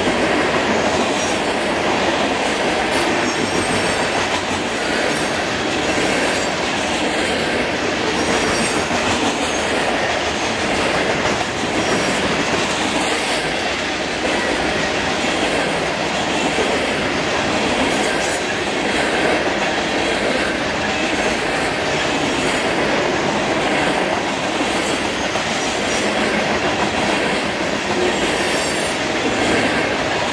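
Union Pacific grain train of covered hopper cars passing at speed: a steady rumble and clatter of steel wheels on rail, with brief high wheel squeals now and then.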